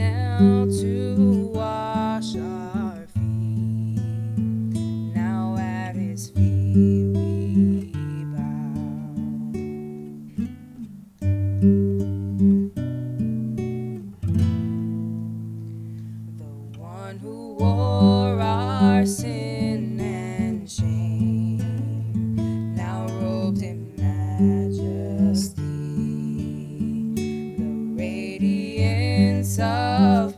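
An acoustic guitar strummed and picked, accompanying two women singing a worship song. Around the middle, the singing drops out briefly and the guitar plays on alone.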